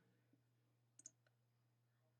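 Near silence with a faint steady low hum, and a quick double click about a second in, a computer mouse button pressed and released.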